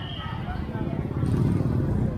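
A motorcycle engine running close by, a low pulsing rumble, under the chatter of a street crowd. A brief high steady tone sounds at the start.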